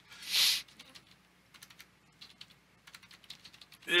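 Typing on a computer keyboard: scattered light key clicks as a line of text is typed. A brief hiss comes just before the clicks, about half a second in, and is the loudest sound.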